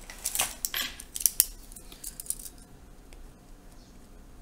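Pens being handled on a desk: a quick run of sharp plastic clicks and clatter as a dried-out pen is tossed and a fresh one is grabbed, loudest a little over a second in. Then quieter, with faint scratching as the new pen starts writing on paper.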